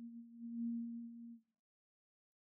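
A steady low electronic beep on one pitch, held for about a second and a half and then cutting off.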